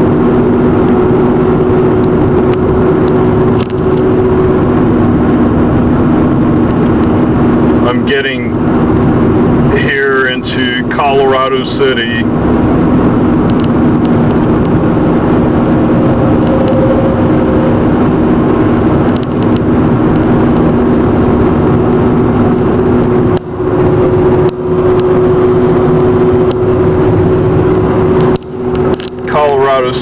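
Car cabin noise at highway speed: a steady drone of tyres, engine and wind, with a low, constant hum.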